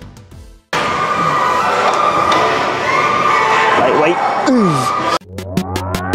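Edited background music changing tracks. One music passage stops under a second in, followed by a loud, dense stretch of mixed sound that ends in falling pitch glides. Near the end a new electronic track with a steady beat and rising sweeps starts abruptly.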